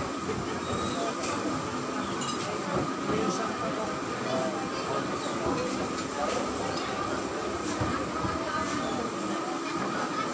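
Busy market ambience: indistinct chatter of shoppers and vendors with occasional clinks and clicks, over a faint steady tone.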